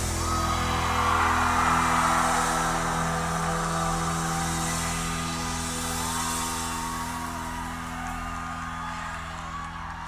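A live band's sustained chord ringing out while a large concert crowd cheers and whoops, the cheering swelling early and then slowly dying down.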